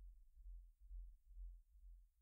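Near silence with a faint low rumble that swells and fades irregularly, about twice a second.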